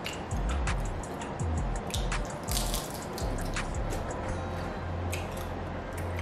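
Crisp strip of vegan bacon being chewed: irregular small crunching clicks, thickest about halfway through.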